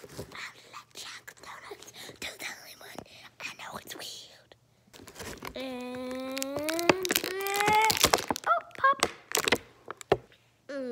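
Clear plastic blister packaging clicking and crinkling as hands work at it. Midway, a child's voice holds one long wordless note for about two seconds, rising slightly in pitch.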